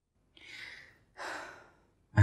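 Two soft, audible breaths, each about half a second long and a little over half a second apart, like a sigh.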